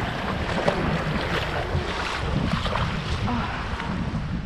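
Wind buffeting the microphone over the wash of shallow seawater lapping around someone standing in it.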